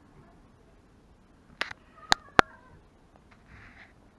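Low background with three sharp clicks, one about one and a half seconds in, then two a quarter-second apart that ring briefly like metal being knocked.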